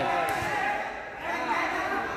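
A volleyball struck once, a sharp smack about a quarter of a second in, over faint voices.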